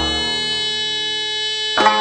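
Korean traditional court music (gugak): a reedy wind melody holding long notes that bend up into each new pitch. A sharp struck stroke comes near the end.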